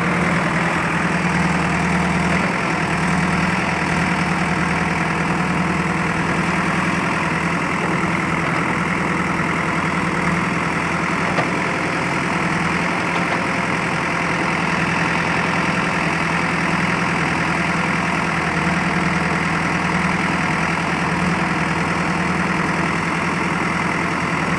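JCB backhoe loader's diesel engine running steadily under the work of the backhoe arm as it digs and lifts a bucket of rubble, with one brief click about halfway through.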